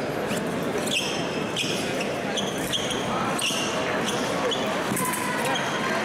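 Fencers' shoes squeaking sharply on the piste during footwork, in repeated short chirps, over a steady crowd murmur in a large hall.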